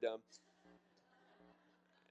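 A man's short spoken "um", then a quiet pause with faint room tone and a steady low electrical hum.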